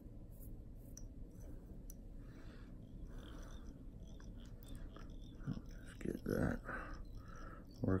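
Quiet room with faint rustles and a few light clicks from hands twisting dubbing onto tying thread at a fly-tying vise. A man's voice comes in over the last two seconds or so.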